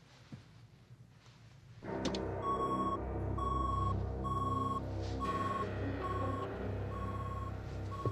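Electronic beeping from a missile launch console, one steady high beep repeating about once a second, starting with a click about two seconds in: the launch sequence has been set off. Under it runs a low, dense rumbling drone.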